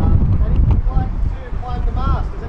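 Wind buffeting the microphone with an uneven low rumble, while people talk faintly in the background.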